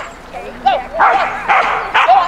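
A dog yipping and then barking, with a few harsh barks close together in the second half.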